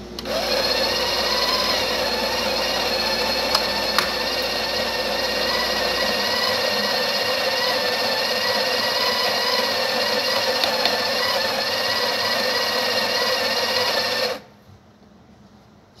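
Built-in conical burr grinder of a Breville 870XL espresso machine grinding a dose of coffee into the portafilter, a steady motor whine that cuts off suddenly about two seconds before the end. The grind has been set finer, to setting three, after being far too coarse.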